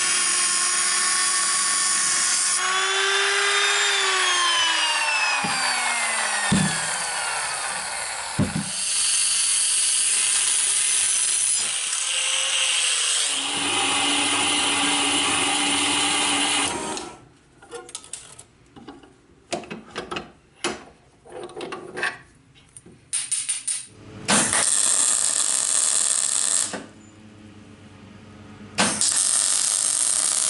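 An angle grinder running on metal, then spinning down with a falling whine. A small metal-cutting bandsaw follows, running steadily with a low hum. After it comes a run of short, separate bursts, and near the end a steady, hissing welding arc.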